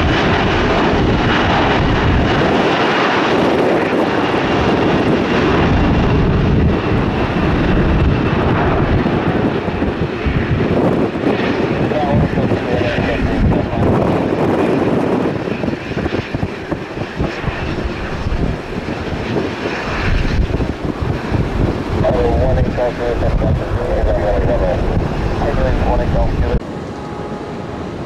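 Jet airliner engines at takeoff thrust: a loud, continuous rumble that eases somewhat about halfway through.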